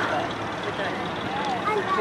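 Outdoor background noise with faint, distant voices.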